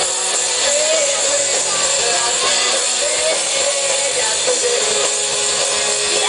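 Live rock band playing loudly: electric guitar and drum kit with a lead singer's voice over them.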